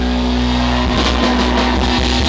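Live rock band playing loud: electric guitars sustain a chord over bass, and drums and cymbals become busier about a second in.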